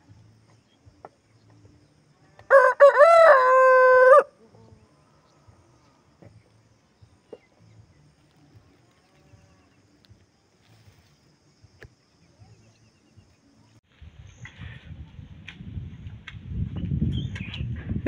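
A rooster crows once, a single call of under two seconds about two and a half seconds in. Faint ticks follow, and a low rumbling noise builds over the last few seconds.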